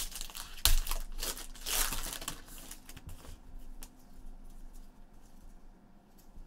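Shiny trading-card pack wrapper being torn open and crinkled by gloved hands, with a sharp crackle under a second in. The crackling dies down after about three seconds to faint handling of the cards.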